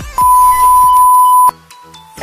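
A single loud, steady electronic beep at one high pitch, held for a little over a second and cutting off abruptly, like an edited-in censor bleep or test tone.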